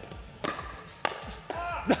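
Pickleball rally: two sharp pops, about half a second apart, as sandpaper-faced paddles strike the plastic ball. Background music runs underneath, and there is a brief shout near the end.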